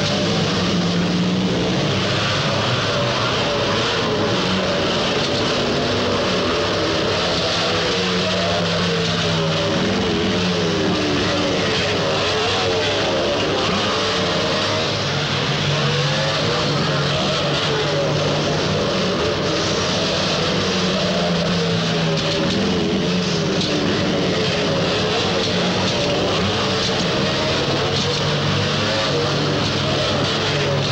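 Several motorcycle engines at racing speed, their pitches swooping up and down as the riders rev and shift, overlapping one another throughout, over a steady hiss.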